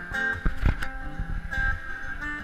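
Acoustic guitar strummed through a PA, holding a chord pattern, with a few hard strums about half a second in.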